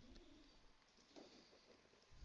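Near silence: quiet room tone, with a faint short low tone in the first half-second.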